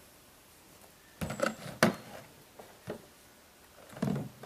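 Vintage McCulloch chainsaw being set down on a plastic cooler lid: a dull thud and clatter about a second in, then one sharp knock, and a lighter knock near the end.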